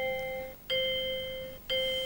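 Game-show electronic chime sounding once for each word tile moved into place on the quiz board: three steady tones about a second apart, each starting sharply and fading away.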